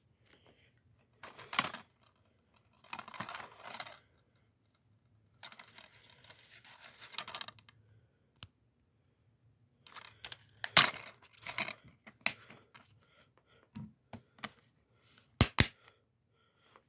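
Plastic DVD case being handled: rustling and sliding as it is picked up and turned over, then a run of sharp plastic clicks and snaps as the case is opened and the disc is taken out. The loudest is a quick pair of snaps near the end.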